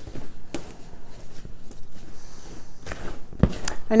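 A bare hand stirring damp peat moss and perlite seed starting mix, just soaked with boiling water, in a plastic tote: irregular rustling and scraping, with a couple of sharper knocks against the tub, one about half a second in and one near the end.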